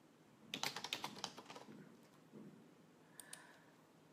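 Computer keyboard being typed on: a quick run of soft key clicks in the first half, then a few isolated clicks near the end.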